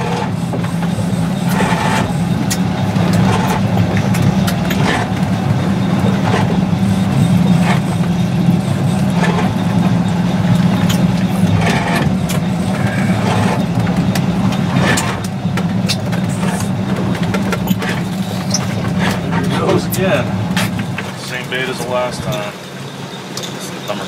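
A boat engine runs with a steady low drone, which drops away about three seconds before the end.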